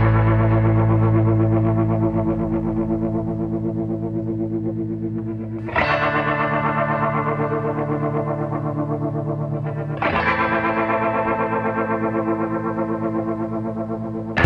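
Background music: held, rippling chords, struck anew about six seconds in and again about ten seconds in.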